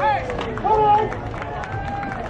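Voices shouting drawn-out calls at a ballpark, their pitch bending up and down, with scattered sharp claps or knocks in the background.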